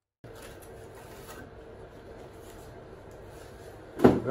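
Steady workshop background noise with a faint hum, cutting in suddenly a moment in, with a few faint light handling sounds.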